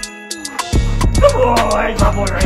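Background hip-hop music with a regular beat; the beat drops out for under a second near the start, then comes back in with a wavering voice line over it.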